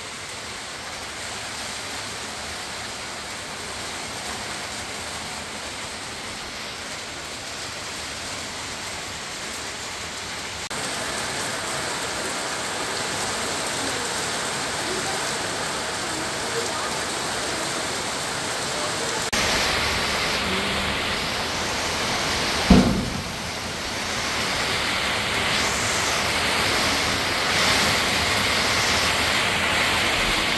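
Rain falling steadily, growing heavier in steps partway through. One sudden low thud comes about two-thirds of the way in.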